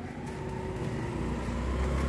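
Motor scooter's engine running as it rides toward the listener, growing gradually louder.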